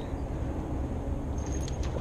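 Low, steady rumble of wind buffeting an action-camera microphone, with a few faint clicks about three-quarters of the way through.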